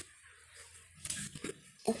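Soft rustling of a bunched cloth handled close to a phone's microphone, a few faint scuffs about a second in, then a woman starts speaking near the end.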